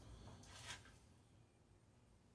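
Near silence: room tone, with one faint, brief rustle about half a second in.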